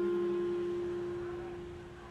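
The last strummed chord of a Martin DCME acoustic-electric guitar rings out and slowly fades away, with one note lingering longest.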